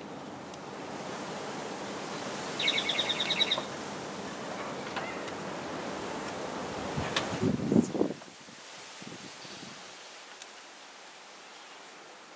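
A small bird's rapid trill of high chirps, about ten a second for roughly a second, over a steady outdoor background rush that falls away about eight seconds in.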